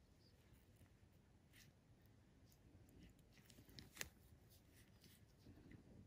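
Near silence: faint room tone with a few faint clicks, one sharper click about four seconds in.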